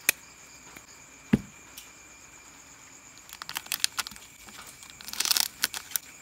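Plastic 32650 cell holder clicking as it is pressed onto the LiFePO4 cells: two sharp clicks in the first second and a half. Then, from about three seconds in, a run of light rattling, ticking and crinkling as small parts are handled, busiest near the end.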